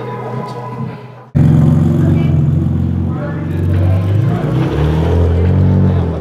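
Background music fades out, then about a second in a car engine starts sounding loud and low, and it keeps running to the end.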